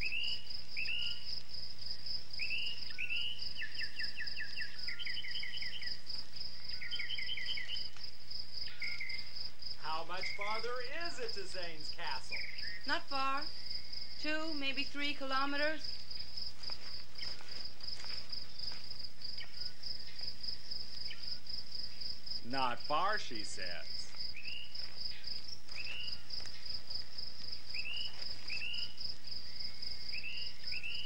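A steady, high-pitched insect drone with songbirds chirping and trilling over it throughout. A voice breaks in briefly around the middle and again past two-thirds of the way.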